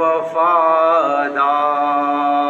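A man's voice chanting a noha, a Shia mourning lament, in long held notes that bend slowly in pitch.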